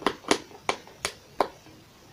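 Fingernails picking at stubborn sealing tape on a cardboard kit box: a run of five sharp clicks, about three a second.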